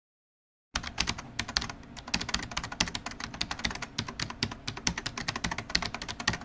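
Typing sound effect: a rapid run of keystroke clicks, many a second. It starts abruptly out of silence under a second in and stops just before the end.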